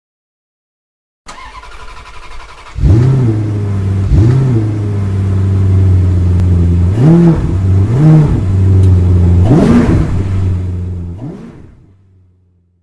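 A car engine comes in about a second in and runs loudly from about three seconds. It is revved up and back down five times over a steady idle, then fades out near the end.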